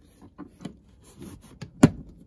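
Orange plastic trim removal tool prying at a plastic dashboard end cover: a few small scrapes and clicks of plastic on plastic, then one sharp click near the end.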